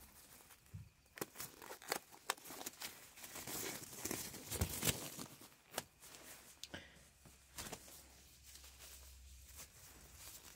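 Blue disposable gloves being pulled on and worked over the hands close to the microphone: rubbery crinkling and rustling, with sharp little snaps and clicks scattered throughout, busiest a few seconds in.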